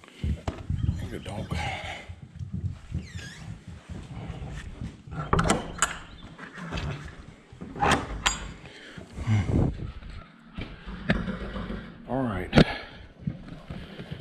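Metal slide-bolt latch on a wooden stall door clacking and knocking as it is worked, with several sharp clacks among the low bustle of horses.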